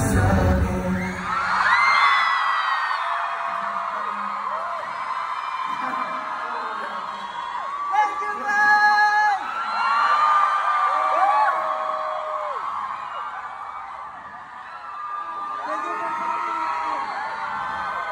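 Concert crowd of fans screaming and cheering in a live venue, with many overlapping high whoops and shrieks. The music stops just as it begins, and the cheering swells and fades in waves.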